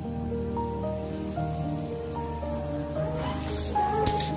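Chicken nuggets deep-frying in hot oil, a steady sizzle, with a louder surge of sizzling near the end as another nugget goes into the oil. A melody of held notes is heard over it.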